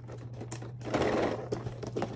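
Cardboard advent calendar box being handled on a table, with light taps and a short scraping rustle about a second in, over a steady low hum.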